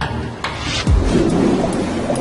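Deep, thunder-like rumble with a low boom about a second in.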